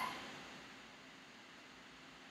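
Faint, steady hiss of room tone with no distinct sound in it.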